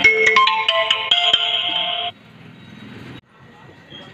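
A mobile phone ringtone: a melody of short, bright ringing notes that stops abruptly about two seconds in, leaving only faint hiss.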